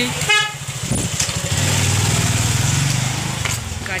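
A small motor vehicle passing close by, its engine running with a low, fast pulse that swells in the middle and fades away. A short horn toot sounds near the start.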